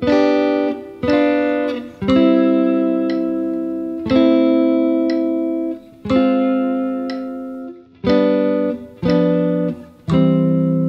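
Clean electric guitar, a Fender Telecaster, playing triad chords at 60 BPM: a chord on the beat, some held for two beats, each ringing out and fading before the next. It is a progression that slips a diminished triad in over the five chord to imply G7.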